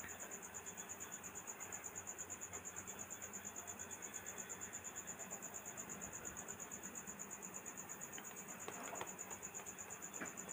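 Faint, steady trilling of a cricket: a high, rapidly pulsing chirp that goes on without a break. A few faint clicks sound about nine seconds in.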